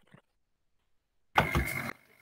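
Near silence, then about a second and a half in a video-call microphone cuts in with a half-second burst of noise, a low thump and a steady high whine. The whine carries on faintly as the line stays open.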